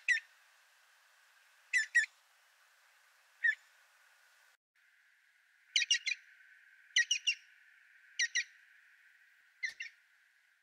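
Green woodpecker calling: the same short, sharp syllable given in seven groups of one to three notes, spaced one to two seconds apart. The grouping and strength vary from group to group.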